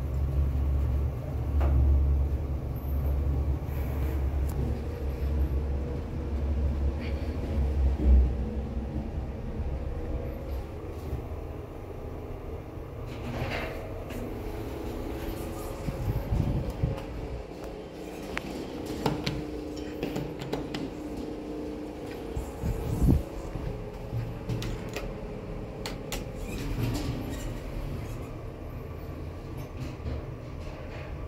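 Toshiba hotel passenger lift car running upward with a low rumble, slowing and stopping with a loud peak about eight seconds in. The car doors then slide open and later shut with a few knocks, and the car runs again with a fainter hum.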